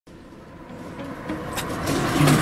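Street traffic noise fading in from quiet.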